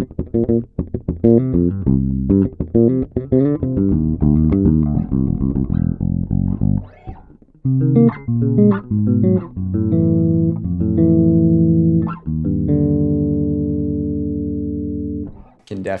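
Electric bass guitar played through an Aguilar AG 700 bass head with the low mids and high mids boosted. It plays a busy run of quick fingered notes, then slower notes, ending on a long held note that rings for about three seconds before fading.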